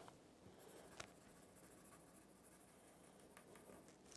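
Faint scratching of a pencil rubbed hard back and forth on paper, with a soft click about a second in.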